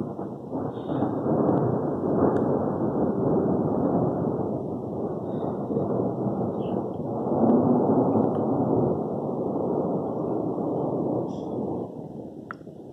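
Thunder rolling: a long, deep rumble that swells about two seconds in and again about eight seconds in, then dies away near the end.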